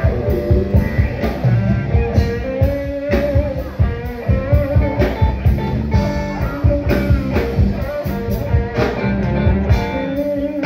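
Live rock band playing: electric guitars over a steady drum-kit beat, with a lead guitar line of held notes.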